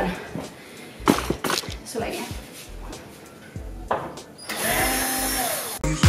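A few scattered knocks and clicks, then a cordless drill-driver runs for just over a second near the end, its motor whine rising and then falling, as it works the screws of a cabinet handle.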